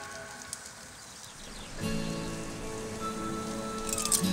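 Bone-in ribeye steak sizzling on a grill grate over charcoal, a steady hiss. Background music with held notes comes back in about halfway through.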